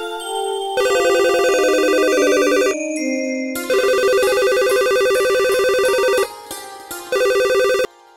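Mobile phone ringtone signalling an incoming call: a fast-warbling electronic trill in three bursts, the first two about two seconds each and a short one near the end, with brief gaps between.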